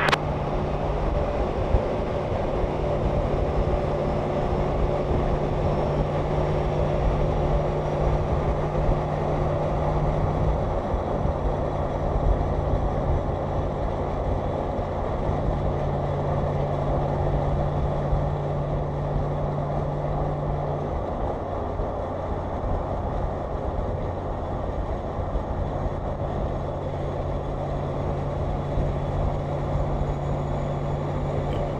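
Steady drone of a vehicle travelling at highway speed: road noise under a low engine hum whose pitch shifts slightly a few times.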